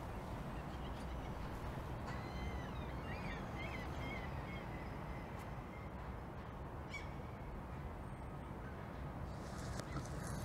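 Birds calling in a run of short calls from about two seconds in, with one more call near seven seconds, over a steady low outdoor rumble.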